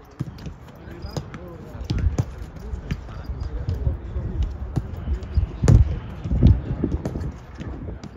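Footballs being kicked and juggled on grass: a scatter of dull thuds of foot on ball, the loudest a little before six seconds in, with players' voices in the background.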